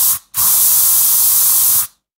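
Paint spray hissing in two bursts: a short one, then a brief gap and a longer one of about a second and a half, each starting and stopping abruptly.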